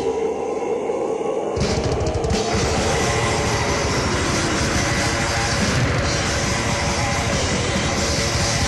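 Death metal played by a band of distorted electric guitars, bass and drums. The first second and a half is a brief guitar-only break, then the drums and cymbals come back in with a fast, dense beat under the guitars. There are no vocals.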